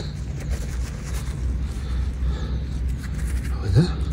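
Gloved hand rummaging in loose, freshly dug soil, with soft rustling over a steady low rumble. A brief voice sound comes near the end.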